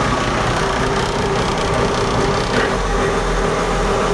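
Volvo Penta KAD42A six-cylinder marine diesel running at low revs near idle, a steady engine sound with a constant whine; the low rumble grows stronger in the last second or so.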